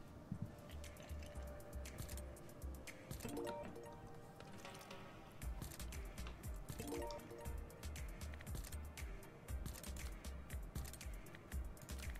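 Pragmatic Play's Juicy Fruits online slot game audio playing quietly: background music with a pulsing bass line and a stream of small clicks as the reels spin on autoplay. There are short rising chimes about three and a half and seven seconds in.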